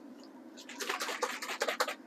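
Water sloshing and splashing inside a plastic barbecue-sauce bottle as it is rinsed out to get the last of the sauce: a run of quick, irregular splashy sounds starting about half a second in.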